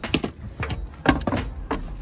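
A snowboard being pulled out of a storage compartment, knocking and scraping against it: a quick run of about six sharp knocks over two seconds.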